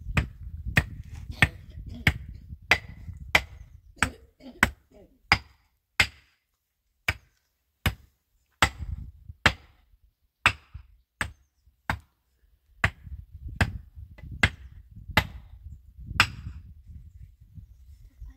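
A hand pick striking stony ground again and again, about one sharp blow every two-thirds of a second, with a few short pauses between runs of strokes.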